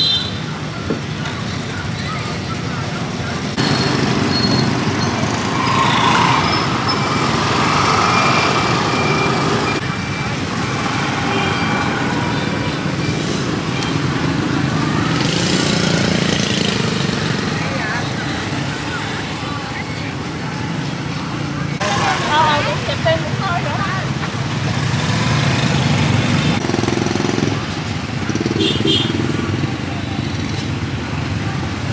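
Steady street traffic noise from passing vehicles, with indistinct voices talking nearby.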